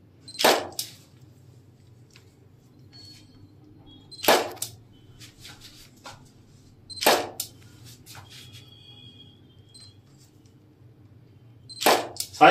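Camera shutter firing three times, about four and then three seconds apart, each release a sharp double click.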